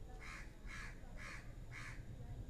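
Four short bird calls in an even row, about two a second, faint in the background.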